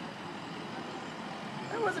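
Steady low hum of vehicle engines idling in the street, with no sharp events, before a woman's voice starts near the end.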